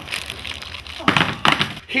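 Plastic chocolate-bar wrappers crinkling as a handful of bars is handled right at the microphone, then a few short knocks and thuds about a second in.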